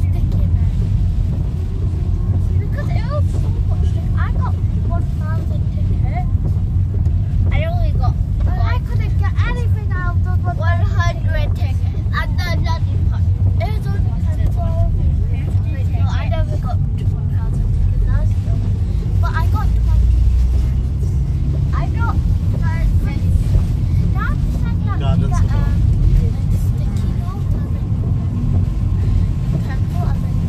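Steady low rumble of a car driving on a wet road, heard from inside the cabin, with people talking on and off over it.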